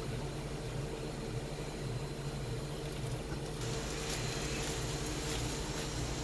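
A plastic-gloved hand squeezing dye-soaked cotton yarn makes a faint wet rustle over a steady low hum. The rustle gets a little louder about halfway through.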